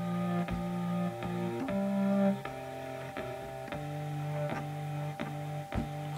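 Harmonium playing held chords in a short instrumental passage, with the chords changing about every half second to a second.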